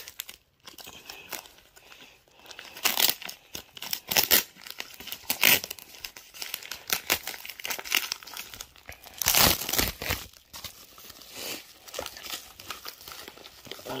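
A plastic bubble-lined mailer being torn open by hand and crinkled, in irregular bursts of rustling and tearing, the loudest about nine seconds in.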